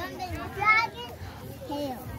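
Children's voices talking and calling out, with no clear words.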